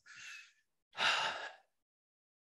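A man's sigh: a faint breath in, then a longer audible breath out about a second in, unvoiced.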